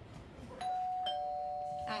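Two-tone doorbell chiming ding-dong: a higher note about half a second in, then a lower note half a second later, both ringing on steadily.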